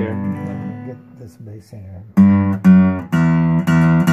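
Zager ZAD900CE solid spruce and rosewood acoustic guitar played with a pick: a chord rings and fades, a few softer picked notes follow, then from about two seconds in loud strummed chords come about twice a second.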